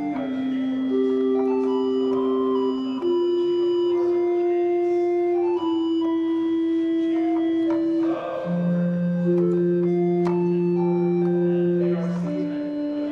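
Commodore 64 SID chip playing a three-voice flute preset from a Music Port keyboard: slow, sustained notes and chords, each held one to three seconds, with a low bass note held through the last few seconds.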